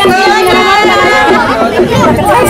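Several women's voices talking over one another, loud and close, with music underneath.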